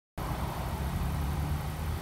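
A car engine idling steadily, a low even hum that cuts in suddenly just after the start.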